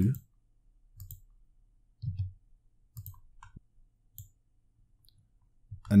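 A few short, scattered clicks from a computer keyboard and mouse, spaced about a second apart.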